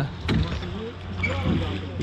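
Voices talking on board a rowboat, quieter than the main narration, over a steady low rumble.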